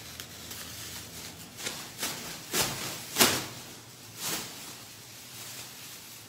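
Plastic trash bag liner rustling as it is opened up, in several short crinkles, the loudest about three seconds in.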